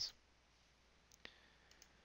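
A few faint computer mouse clicks over near silence, one about a second in and two close together near the end.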